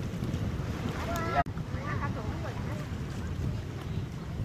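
Wind buffeting the camera microphone, a steady low rumble, with a brief voice just after a second in and faint voices after it. The sound drops out suddenly for an instant about one and a half seconds in.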